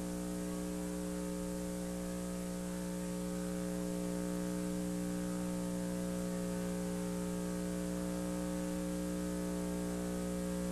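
Steady electrical mains hum, a buzzy stack of unchanging tones, over faint hiss.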